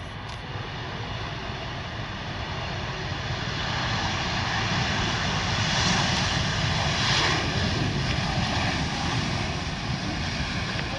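Jet engines of an Airbus A321 during its landing roll, a steady roar that swells over several seconds to its loudest about six to seven seconds in, then eases slightly.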